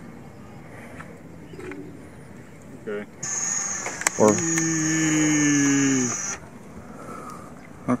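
A steady high-pitched whine starts a few seconds in, lasts about three seconds and cuts off suddenly. Over its middle a person gives a long drawn-out "ohh" that falls slightly in pitch.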